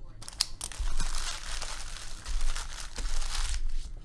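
Foil trading-card pack wrappers crinkling and crackling as they are handled and gathered up, with a few sharp clicks in the first second, lasting about three and a half seconds.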